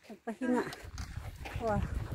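A woman's voice: a short vocal sound early on and an "oh" near the end, over wind rumbling on the microphone from about a second in.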